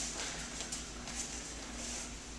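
A few faint, soft rustles of cotton practice uniforms as two people move on the mat, over a steady low electrical hum in the room.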